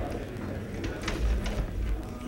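Courtroom room noise as people move about: shuffling and a few sharp clicks and knocks, with a low rumble in the second half.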